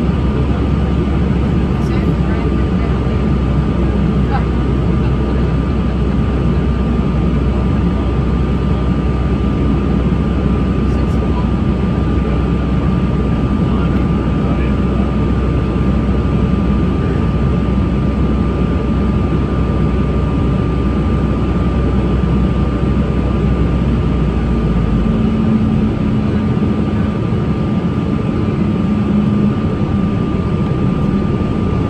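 Airliner cabin noise in flight: the steady sound of the jet engines and rushing air, with a thin, steady high hum over it. About 25 seconds in, the deepest rumble drops away and a low hum sounds for a few seconds.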